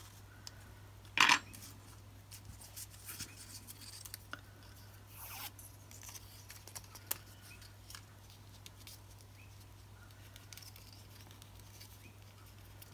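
Faint handling noises of a paper quilling strip and quilling tool: scattered small clicks, scrapes and paper rustles, with one sharper, louder knock or rustle about a second in. A steady low hum runs underneath.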